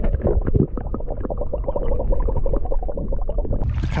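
Water heard through a camera held below the surface: muffled gurgling and sloshing with many small knocks, the high end cut away. A little before the end the camera comes out of the water and the sound opens up into bright splashing and hiss.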